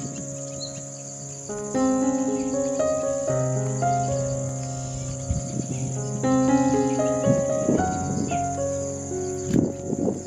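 A steady, high-pitched insect trill runs throughout over gentle background music made of a slow sequence of held notes.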